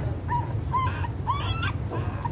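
Nursing puppies squeaking and whimpering, about four short high calls, over a steady low hum.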